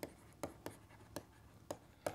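A stylus writing on a tablet: about five light, uneven clicks and taps of the pen tip as handwriting is drawn.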